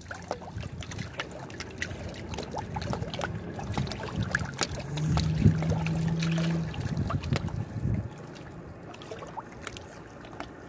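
Small lake waves lapping and splashing against shoreline rocks in quick irregular slaps, with the low drone of a motorboat engine. The drone builds, is loudest in the middle and cuts off sharply about two seconds before the end.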